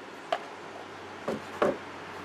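A short click, then two knocks about a third of a second apart, as a paint-filled plastic cup is flipped upside down with the painting panel and set down on the rack for a flip-cup pour.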